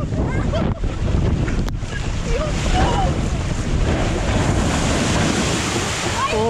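Rushing, splashing water and wind buffeting the microphone as a multi-person raft slides down a water slide into the splash pool, with a few brief shouts from the riders.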